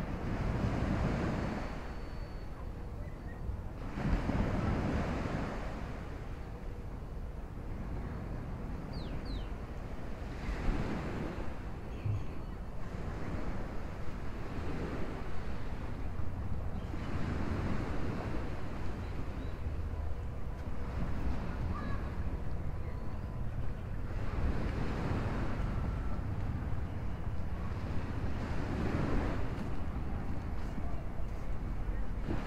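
Small waves breaking on a sandy beach: a wash of surf swells up and fades every few seconds, over a low rumble of wind on the microphone.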